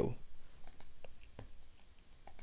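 A few light computer mouse clicks, spaced out, the loudest about one and a half seconds in.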